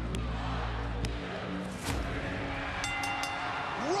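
Wrestling arena crowd noise with a few sharp thuds, then, about three quarters of the way in, the ring bell struck three times in quick succession, signalling the end of the match.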